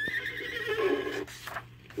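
A horse's whinny played from a read-along storybook record, the signal to turn the page. It rises at the start, holds with a wavering pitch for a little over a second and then fades.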